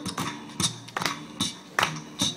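Acoustic guitar strummed in a steady rhythm, sharp percussive strokes about two or three a second.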